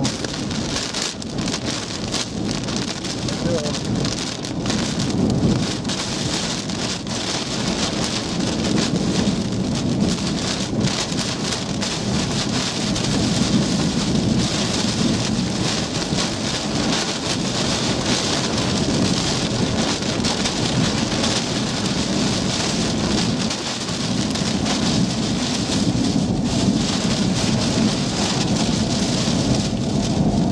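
Heavy wind-driven rain and hail hitting a vehicle's windshield and body in the rear-flank downdraft of a tornadic thunderstorm, with many sharp pelting impacts over a steady downpour. Gusting wind buffets the vehicle, swelling and easing over the roar.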